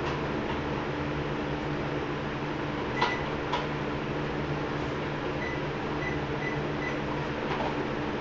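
Treadmill running with a steady motor hum while a person walks on the belt, two sharper knocks about three seconds in. A few faint short beeps come at even spacing a little past the middle.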